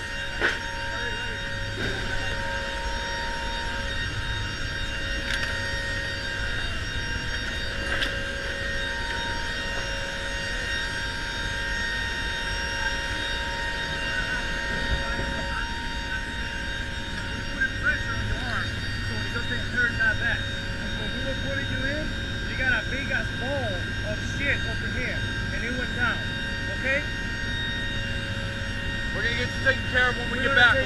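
Four-engine turboprop drone of a C-130J in flight, heard from inside the cargo hold: a steady din with several constant tones that do not change, and a few light knocks.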